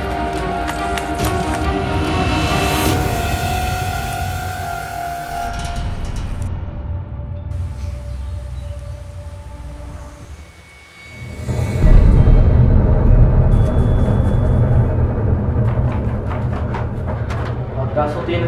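Ominous horror-film score: held, droning tones for the first several seconds that thin out and nearly die away about eleven seconds in, then a loud, deep low rumble swells up and carries on to the end.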